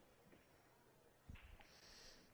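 Near silence: quiet room tone, with a faint soft thump about a second and a quarter in and a faint brief hiss near the end.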